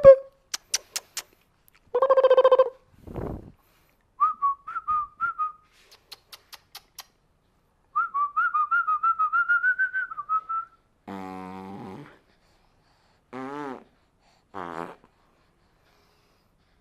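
Person whistling short, rapidly warbling trills, with bursts of sharp clicks between them. A few short voiced sounds come near the end.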